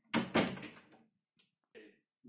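A wooden interior door being shut: two sharp knocks in quick succession, fading within about a second.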